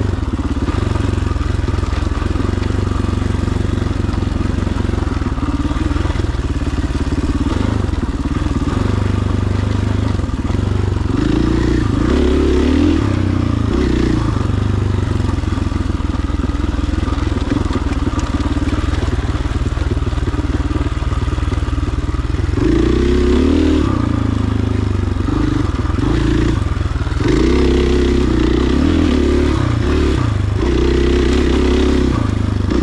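KTM 500 XCF-W dirt bike's single-cylinder four-stroke engine running as it is ridden, throttle opening and closing, with the revs rising about twelve seconds in, again a little past the middle, and near the end.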